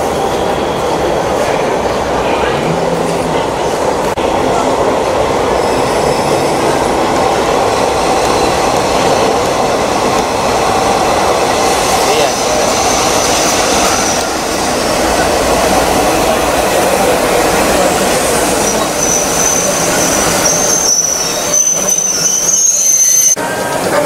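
Diesel passenger train pulling into a station and running slowly along the platform with a steady rumble. A high-pitched wheel squeal comes in about halfway through and again for several seconds near the end as the train slows. The sound cuts off suddenly just before the end.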